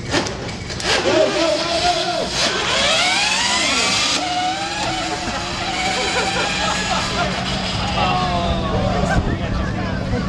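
Modified Power Wheels ride-on racers launching in a drag race, their electric motors winding up in a rising whine a couple of seconds in, with a crowd shouting and cheering.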